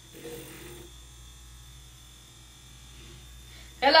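A handheld battery milk frother runs faintly and steadily, its whisk spinning in a small glass of milk and heavy cream as it whips the mixture into a thick cold foam. A spoken word cuts in near the end.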